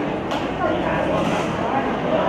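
Indistinct voices of several people in a large reverberant hall, with a single short knock about a third of a second in.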